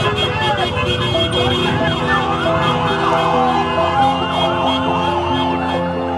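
Several sirens wailing at once, their rising-and-falling pitches overlapping, fading out near the end. Background music with slow held notes plays underneath.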